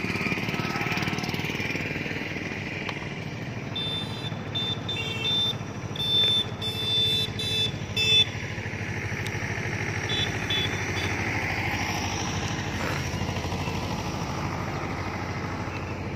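A motorcycle engine running steadily, with short high chirps breaking in around the middle.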